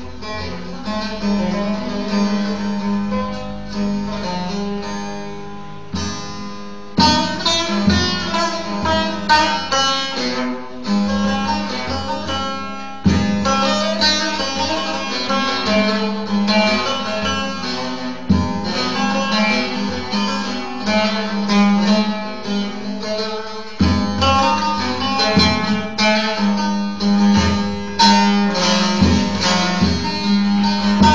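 Long-necked bağlama (saz) played solo: a fast instrumental run of picked notes over a steady low drone, in phrases that break off briefly every few seconds.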